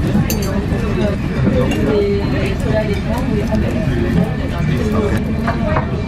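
Restaurant dining-room chatter: several voices talking at once in the background, with a few light clinks of cutlery.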